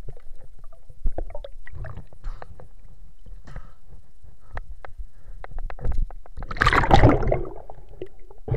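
Underwater sound picked up by a diver's camera in murky water: scattered clicks and knocks with low rumbling, and a louder rushing burst lasting about a second near the end.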